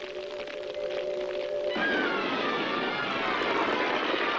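Cartoon orchestral score holding a chord, then nearly two seconds in a sudden loud rush of noise with a descending whistle over it: a cartoon explosion.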